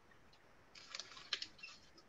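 Over-ear headphones being handled and put on: a short cluster of faint rustles and small plastic clicks, with one sharper click in the middle, picked up by a computer microphone.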